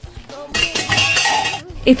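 A metallic clatter, like hard objects hitting the floor, starting about half a second in and lasting about a second: the sound of something being thrown down.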